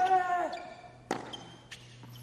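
Tennis ball struck by a racket in a baseline rally on a hard court. The first hit comes with a player's grunt of about half a second, which is the loudest sound. A second hit follows about a second later, and a lighter ball impact comes shortly after that.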